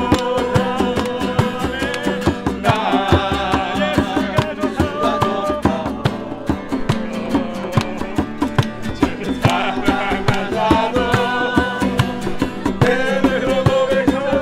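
A group of voices singing a lively worship song in Korean to two strummed acoustic guitars, with hand clapping on the beat.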